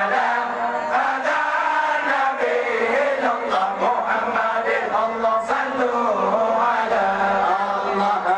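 A large group of men chanting meulike, the Acehnese devotional zikir chant in praise of the Prophet, their voices carrying on without a break.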